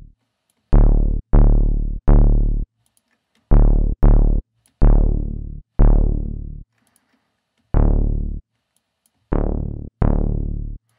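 Serum synth bass patch built from two saw-wave oscillators through a low-pass filter, played as single low notes, about nine of them at uneven spacing. Each note starts bright, darkens quickly as the filter closes, and cuts off after half a second to a second.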